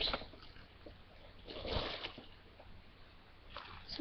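Bubble wrap rustling and crinkling as a package is unwrapped by hand, with one louder burst of crinkling a little before halfway.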